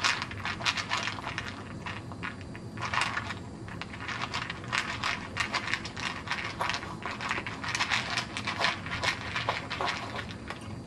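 A corgi eating dry kibble from a bowl: rapid, irregular crunching and clicking of kibble against the bowl and in its teeth.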